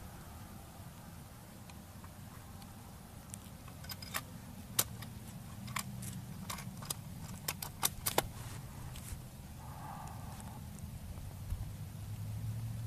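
Scattered faint sharp ticks and clicks, most between about three and eight seconds in, over a low steady rumble; no shot is fired.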